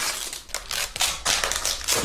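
Parcel wrapping of brown paper and green plastic crackling and tearing as it is pulled and cut open, a quick, uneven run of crinkles and rips.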